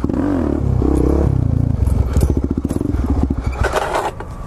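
Suzuki DR-Z400SM single-cylinder four-stroke engine running at low revs as the supermoto rolls along, fading near the end, with a clatter as the bike comes to a stop.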